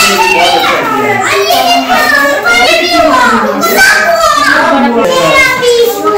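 Several children's voices chattering and calling out loudly, without a break, as they play.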